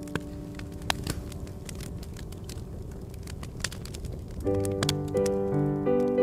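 Small wood campfire crackling, with many sharp pops and snaps over a steady rushing sound. Piano music comes back in about four and a half seconds in.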